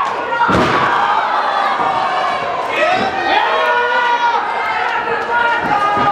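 A wrestler landing hard on the wrestling ring, one loud slam about half a second in, with spectators shouting throughout.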